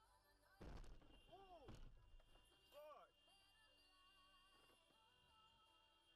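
A car's rear-end collision: one sudden impact thump about half a second in, followed by a few short exclaimed cries, over quiet background music.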